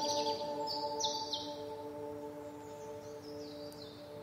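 A held chord of slow relaxation music, several steady notes fading away. Short high bird chirps are laid over it in a cluster during the first second or so and again near the end.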